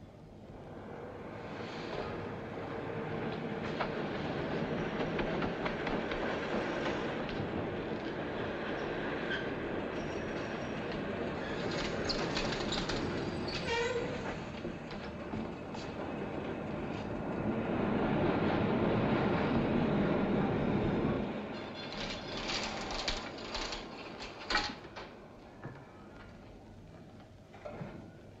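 Rumble of a passing train, building over the first few seconds and staying loud, swelling a little past the middle and then dropping away sharply about three-quarters of the way through. A few sharp clicks and knocks follow it.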